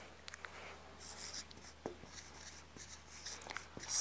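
Marker pen writing on a whiteboard: a series of short, faint strokes with a few light taps.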